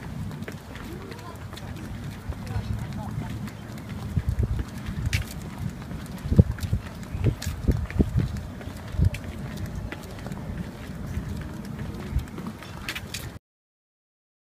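Footsteps on a wooden pier deck: a run of low thumps, heaviest in the middle, over a steady low rumble of wind on the microphone. It cuts off suddenly near the end.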